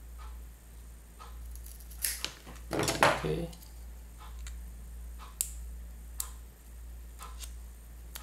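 Scissors cutting through a strip of double-sided tape: a sharp click about two seconds in, then a short, louder snip around three seconds. Single light clicks follow as the small receiver box is handled.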